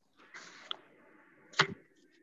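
Faint rustling noise, then a small click and, about a second and a half in, a sharper, louder click or knock.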